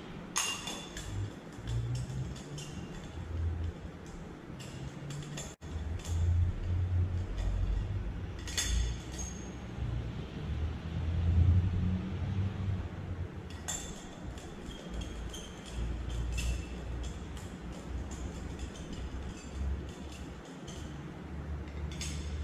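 Glass clinking as a glass bottle of molten culture medium is tipped against glass Petri dishes while the medium is poured: about half a dozen light clinks with a short high ring, a few seconds apart, over a low rumble of handling on the bench.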